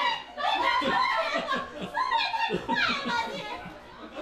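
A woman laughing hard and uncontrollably in loud, high-pitched bursts, with other voices laughing along.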